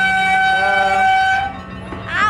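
An amusement-park train sounding one long, steady toot as it goes past, with a second, lower note joining briefly in the middle; the toot cuts off about one and a half seconds in.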